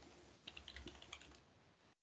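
Faint typing on a computer keyboard: a quick run of keystrokes starting about half a second in and lasting about a second, then stopping.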